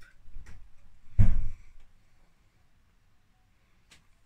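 Light clicks and taps of hands moving while signing, with one louder, dull thump about a second in as the hands come down, then quiet.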